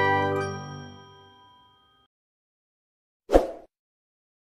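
The last chord of a logo intro jingle, a bright chime-like ding, rings out and fades away over about two seconds. After a silence, a single short thump sounds near the end, a sound effect as the animated subscribe button appears.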